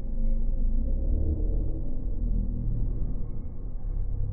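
Train and station noise slowed down several times by slow-motion playback, heard as a deep, steady rumble with low drawn-out tones.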